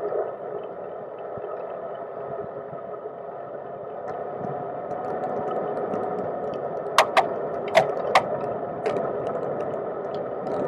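Steady wind and rolling noise of a cargo bike on wet asphalt, carried through the frame into a hard-mounted camera case, growing louder from about four seconds in. A few sharp clicks about seven to nine seconds in.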